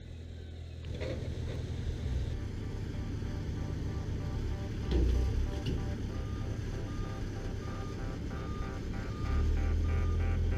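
Diesel engine of a telehandler (telescopic forklift) running as the machine drives with a load on its forks: a steady low rumble, with a heavier low thud about halfway through. Music rises under it near the end.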